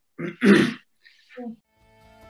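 A person clearing their throat: two rasping bursts about half a second in, the second one louder, then a short low voiced sound. Quiet music fades in right at the end.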